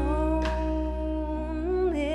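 Live neo-soul band music: a female vocalist holds one long wordless note, bending it slightly near the end, over a sustained electric bass and guitar.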